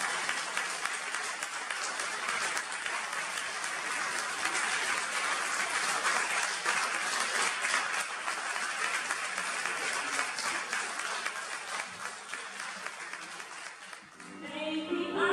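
Audience applause: many hands clapping in a dense, steady patter that thins out near the end.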